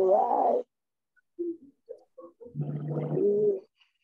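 A person's voice coming through a video call: short unclear vocal sounds cut off by a gap of about a second, then a longer drawn-out vocal sound from about two and a half seconds in.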